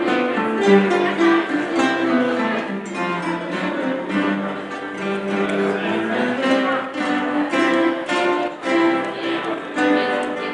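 An ensemble of nylon-string classical guitars playing a piece together, many guitars sounding at once in a steady run of plucked notes.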